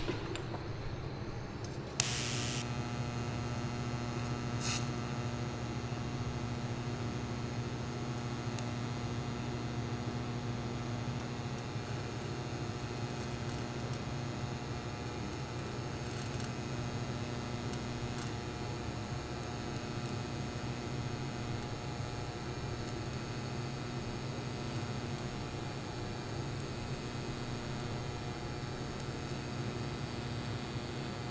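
TIG welding arc struck about two seconds in with a brief high-frequency start crackle, then burning steadily at about 110 amps as a bead is run on square tubing: an even electrical hum with a hiss.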